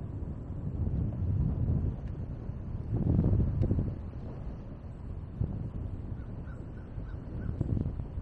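Wind buffeting the microphone in low, gusty rumbles as the bicycle rides along, loudest about three seconds in. Near the end a bird gives a quick series of about five short calls.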